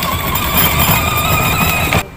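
A small vehicle's motor running steadily, with a rough low rumble and a steady whine above it, cut off suddenly at the end.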